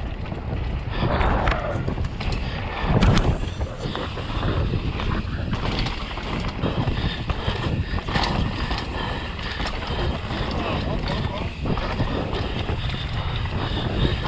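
Enduro mountain bike ridden fast downhill on a dirt and rock trail: a steady rush of tyres on loose dirt and gravel, with wind, broken by frequent rattling knocks from the bike going over rocks and roots, the loudest about three seconds in.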